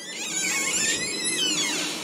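A door's hinges squeaking as it is pushed open: a high, wavering squeal lasting about a second and a half that drops away near the end.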